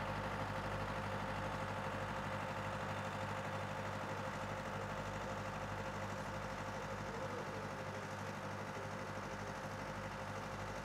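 An engine running steadily at idle: an even, unchanging low hum with a faint steady tone above it.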